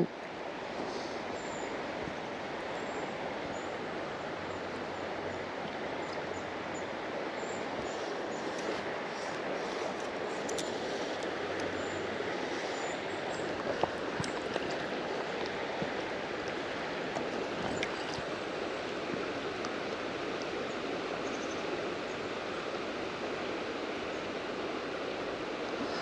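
Steady rush of river water flowing, with a few faint light clicks around the middle.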